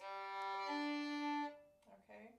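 Violin bowed in a single slurred stroke that crosses from the open G string to the open D string: the low G sounds first, and the D joins about two-thirds of a second in. The note fades out after about a second and a half.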